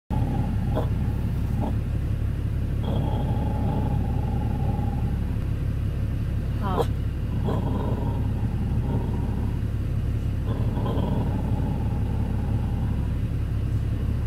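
Blue Lacy dog whining in a series of high, drawn-out whines, the longest lasting about two seconds, with a short sharp cry about seven seconds in. Under it a pickup truck's engine idles with a steady low rumble inside the cab.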